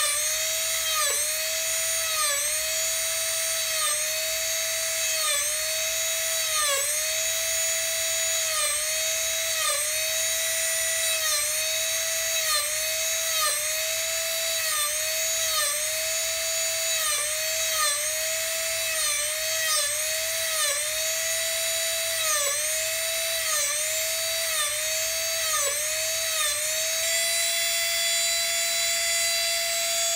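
Master Carver flex-shaft rotary carver spinning a small rounded burr at high speed. Its whine dips briefly in pitch about once a second as the burr is pressed into the wood to carve each small dimple. Near the end it runs steadily without dips.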